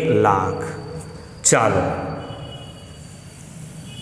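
A stick of chalk taps sharply onto a blackboard about a second and a half in, followed by quiet chalk writing with a faint high squeak.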